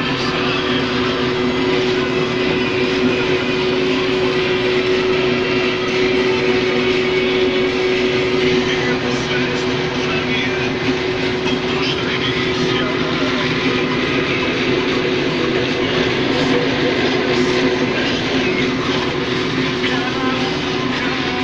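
Case IH 1620 Axial-Flow combine running while harvesting corn, its corn header taking in the rows: a loud, steady machine drone with a constant-pitch hum under it.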